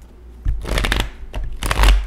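A deck of large tarot cards being shuffled by hand: two bursts of rapid card-on-card flicking, one about half a second in and another near the end.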